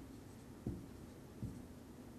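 Marker writing on a whiteboard: faint strokes with two soft taps against the board, less than a second apart.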